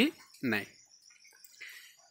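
A single short spoken word, then a pause holding only faint high-pitched background hiss.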